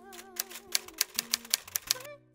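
Typewriter keystroke sound effect: about eight sharp key clicks at an uneven pace through the second half, over soft music with wavering held notes.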